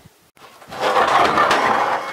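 A rusty metal part scraping and rattling against the steel truck bed as it is dragged out, starting just over half a second in and running loud for about a second and a half.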